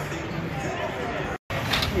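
Background crowd chatter and outdoor ambience with a low steady hum. The sound drops out abruptly for a moment about one and a half seconds in, then the chatter resumes.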